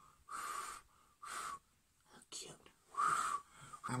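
Short breathy puffs of someone blowing on a freshly glued strip false eyelash to let the lash glue turn tacky, three puffs with a faint whistly tone, the last about three seconds in.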